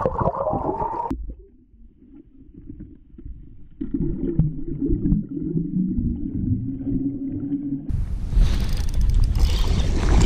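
Muffled underwater sound picked up by a GoPro held beneath the pond surface: a shifting low rumble and knocks, with all the higher sound cut off. About eight seconds in the camera comes up out of the water, and wind on the microphone and the full range of sound return.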